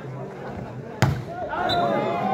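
A volleyball struck hard once: a single sharp smack about a second in, as a spike at the net. Crowd voices rise right after it.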